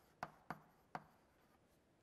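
Three short, sharp taps of writing on a surface within the first second, then faint room tone.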